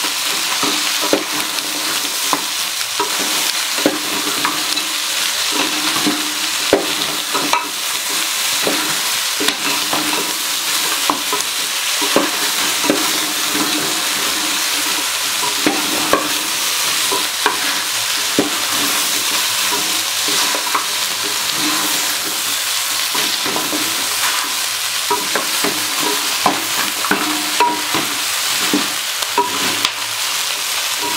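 Beef chunks and sliced onions sizzling in an aluminium pot, frying in their own juices without oil or water. A wooden spoon stirs them, with frequent short knocks and scrapes against the pot.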